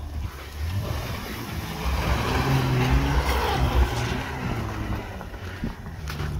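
Volvo XC90 SUV engine revving under load as it drives on packed snow. Its pitch climbs from about two seconds in and it is loudest just before four seconds, with tyre noise on the snow underneath.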